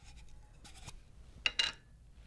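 Faint handling of a small metal candle tin: light rubbing, then a click and a short scrape about a second and a half in as the lid comes off.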